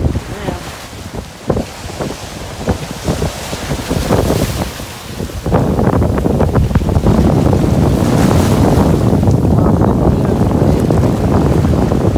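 Ocean surf washing over rocks at the shoreline, with wind buffeting the microphone. About five and a half seconds in it turns loud and steady.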